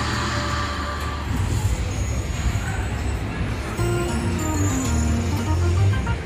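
Dancing Drums Explosion slot machine playing its bonus-round music and win jingle over a steady low bass, as a mini jackpot is awarded and the free spins go on.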